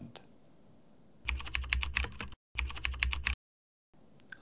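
Logo intro sound effect: a fast run of sharp clicks over a low pulsing bass, in two bursts of about a second each with a brief cut between, then stopping dead.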